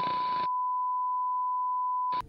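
Steady, unwavering beep of a TV colour-bars test tone, with a burst of static noise over about its first half second.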